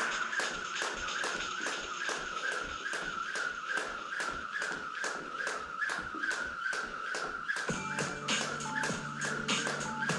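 A jump rope turning steadily, the rope tapping the rubber floor mat about three times a second, over background music that picks up a bass line about eight seconds in.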